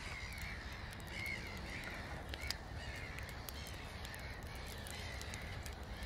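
Faint bird calls, repeated every second or so, over a low steady rumble with a few soft clicks.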